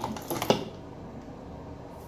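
Brief rustling and a sharp tap about half a second in, then only low, steady room noise.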